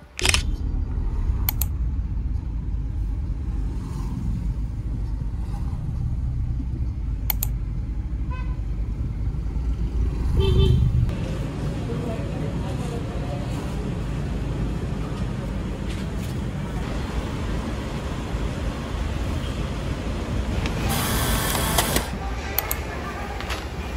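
Street traffic ambience: a steady low rumble of passing vehicles with background voices, and a brief car-horn toot about ten seconds in.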